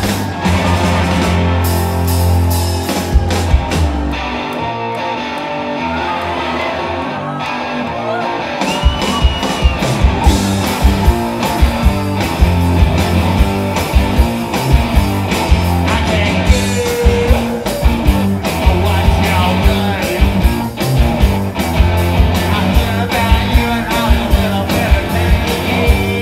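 Live rock band playing: electric guitars, bass and drums, with vocals. The bass and drums drop away for a few seconds about four seconds in, then the full band comes back in around nine seconds in on a steady drum beat.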